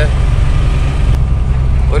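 Truck's diesel engine running steadily as the truck drives, a constant low drone heard from inside the cab, with road noise over it.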